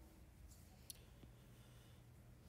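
Near silence with a single faint, sharp click about a second in.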